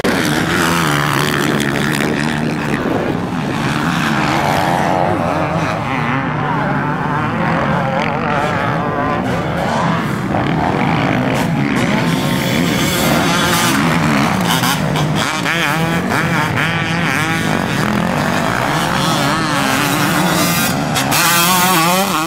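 Two-stroke 250 motocross bikes, a Honda CR250 among them, racing. Their single-cylinder engines rev up and fall back again and again as they are throttled through corners and jumps, with more than one bike heard at once. Near the end one bike passes close by and is louder.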